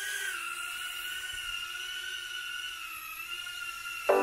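Emax Tinyhawk II micro brushless quadcopter's motors and props giving a steady high-pitched whine, dipping slightly in pitch about half a second in.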